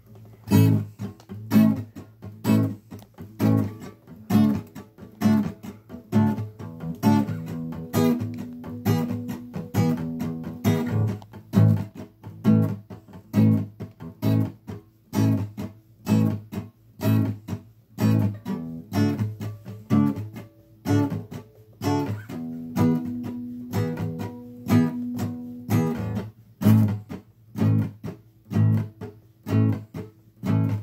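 Solo guitar strummed in a steady rhythm, a repeating chord pattern with no singing yet.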